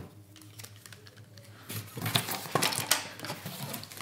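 Cardboard sheet rustling and scraping as it is handled and lifted off a steel welding table, with a quick run of small clicks and knocks starting a little under two seconds in.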